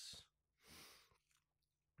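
Near silence, broken by one soft rush of noise lasting about half a second, a little under a second in, and a faint click at the very end.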